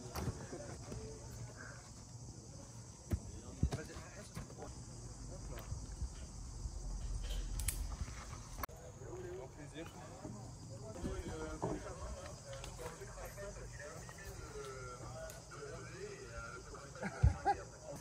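Faint, indistinct voices over quiet outdoor ambience.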